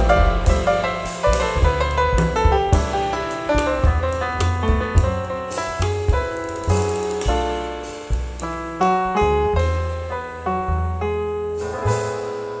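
Live jazz quartet playing: a run of piano notes over double bass, with guitar and a drum kit's cymbals underneath. The piano lines stand out, and the cymbal strokes thin out over the second half.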